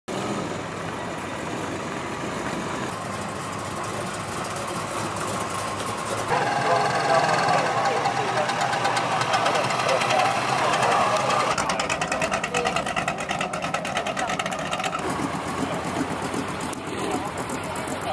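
Old cars and hot rods driving slowly past with their engines running, amid crowd voices. The sound changes abruptly a few times as one car gives way to the next.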